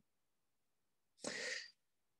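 Near silence, then a little over a second in, one short intake of breath by a man about to speak, lasting about half a second.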